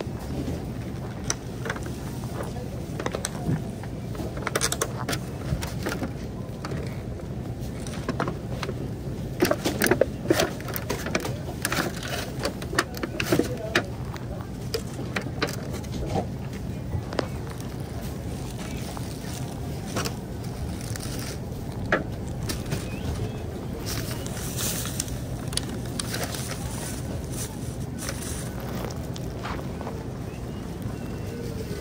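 Grocery store background noise: a steady low hum under scattered clicks, rattles and crinkles from a shopping cart loaded with plastic-bagged produce as it is pushed along. The clicks are busiest about a third of the way in.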